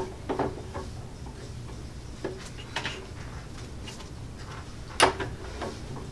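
Scattered light clicks and knocks from the presser-foot clamp of an HFS heavy-duty guillotine paper cutter being turned by hand, with one louder knock about five seconds in. The clamp is being turned the wrong way, so it is not tightening down on the paper stack.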